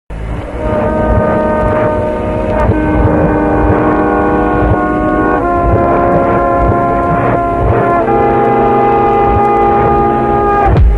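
Background music: sustained chords that change about every two and a half seconds over a low pulsing beat.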